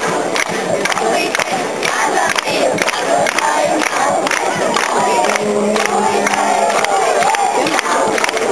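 A group of children's voices shouting and whooping together, with frequent sharp claps. A steady low note is held for about a second and a half past the middle.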